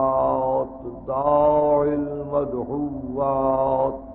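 A man chanting the Arabic opening praise of a sermon in three long, held melodic phrases with short breaks between them. It is an old tape recording with no treble, so the voice sounds dull.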